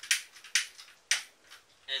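A lighter struck three times, about half a second apart, short sharp rasps at the nozzle of a hydrogen torch as it is being lit.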